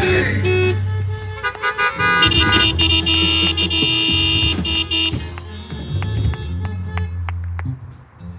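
Live church music: held keyboard chords over a steady bass line, with scattered drum hits. It fades down near the end.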